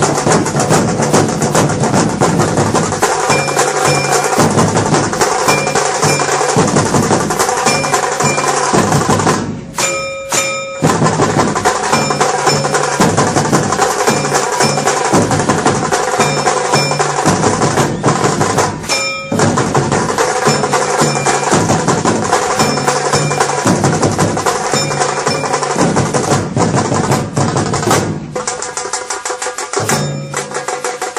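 Procession drums playing a loud, fast, steady rhythm together with ringing metallic percussion. The drumming breaks off briefly about ten seconds in and again just before twenty seconds, then resumes.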